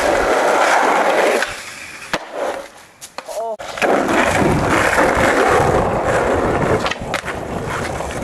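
Skateboard wheels rolling on rough asphalt right beside the microphone, a loud steady rumble starting about four seconds in. Earlier there is a shorter burst of similar loud noise.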